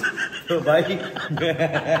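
People talking with chuckling laughter.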